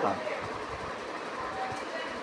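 A pause in speech filled by a steady, even background noise with no distinct events.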